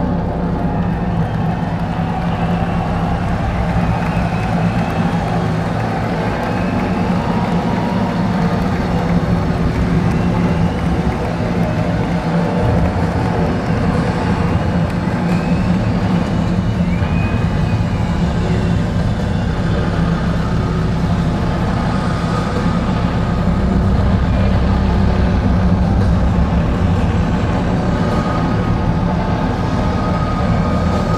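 Loud, sustained electric-guitar drone from a live rock band's amplifiers, with feedback tones and a heavy low rumble rather than a clear song. A feedback tone briefly rises and falls around the middle.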